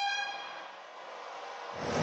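A short pitched tone with a horn-like ring that fades out within about half a second, followed by a faint steady hiss; louder street noise comes in near the end.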